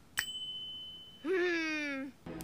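A cartoon ding sound effect: a sharp click followed by a high, clear ringing tone that fades out within a second. Then, about a second and a quarter in, a voice makes a drawn-out sound that falls slightly in pitch.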